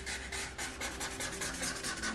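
Black felt-tip marker scratching across paper in quick, short back-and-forth strokes, drawing zigzag lines.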